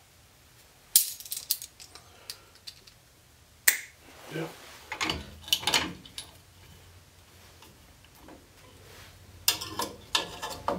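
Sharp metal clicks and clatter of vise grips and a steel brake-shoe hold-down spring and retainer being worked onto the hold-down pin of a drum brake. It comes as a click about a second in, a strong click near four seconds, a few more just after five seconds and a dense cluster near the end, as the retainer is fought into place.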